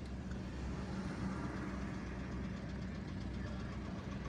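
Car engine idling steadily while stopped in traffic, heard from inside the cabin as an even low hum.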